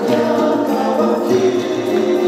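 Andean folk music from an Ecuadorian band, with a chorus of voices singing.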